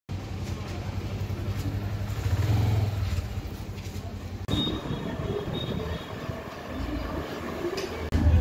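A road vehicle in motion heard from on board: a steady low engine and road rumble, with an abrupt cut to another stretch of the ride about four and a half seconds in.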